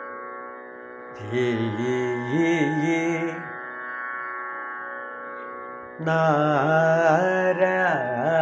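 A man sings ornamented Carnatic phrases from a varnam in raga Suddha Dhanyasi over a steady drone: one short phrase about a second in, then another starting about six seconds in and carrying on.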